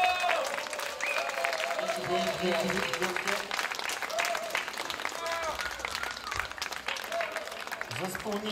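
Audience applauding at the end of a song, with a few voices calling out over the clapping.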